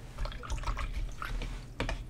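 Faint, scattered small ticks and light taps from handling at a watercolour painting table, with two sharper clicks near the end.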